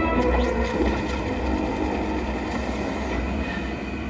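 Television episode soundtrack: a steady deep rumble under held, drawn-out tones, an ominous sci-fi drone.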